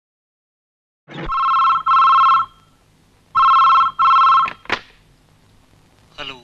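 Landline telephone ringing in two double rings, 'ring-ring… ring-ring', followed by a sharp click.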